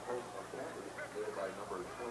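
Indistinct chatter from several people talking at once in the background, with no clear words.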